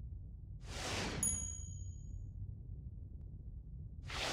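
Motion-graphics sound effects: a whoosh about a second in, with a bright, high ding ringing briefly over it, and a second whoosh starting at the very end, all over a steady low hum.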